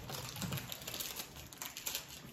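Markers and pencils scratching on paper as several children draw at once: a quick, uneven run of small scratchy strokes and taps.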